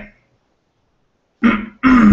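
A man clearing his throat: two short rasping bursts about a second and a half in, the second the louder and trailing off.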